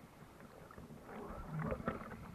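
Water splashing and sloshing from swimming strokes at the sea surface, heard close to the water, growing louder about a second in.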